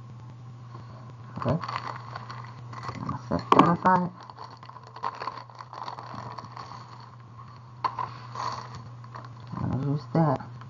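Small clear plastic zip-top bag of gemstone beads crinkling as it is opened and handled, with a few sharper rustles near the end, over a steady low hum.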